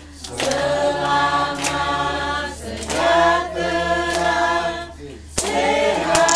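A family group of men's and women's voices singing a birthday song together unaccompanied, in sung phrases with short pauses between them.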